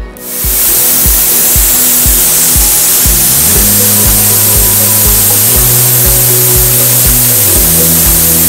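Ultrasonic bath running with a beaker of copper nanoparticles in water, sonicating them to disperse them: a loud, steady, bright hiss that starts within the first half second. Background music with a steady beat plays underneath.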